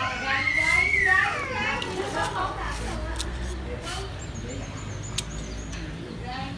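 A few sharp snips of hand pruning shears cutting twigs on a bonsai fig, the loudest about five seconds in. In the first two seconds, high voices in the background, a child's among them.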